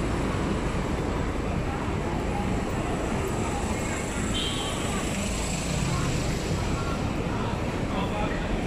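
Busy city street ambience: a steady rumble of road traffic with faint chatter from passers-by.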